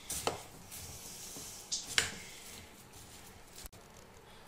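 Dry puffed rice (muri) rustling as it is tossed and mixed with a spatula in a glass bowl. A few sharp clicks of the spatula against the bowl break in, the loudest about two seconds in.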